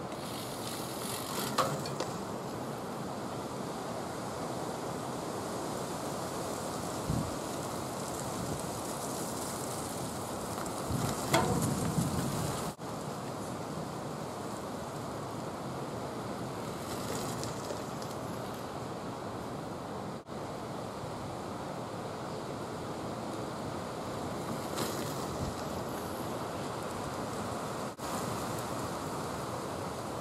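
Steady wind noise on the microphone, with short louder gusts or rustles about a second and a half in and, loudest, around eleven to twelve seconds in.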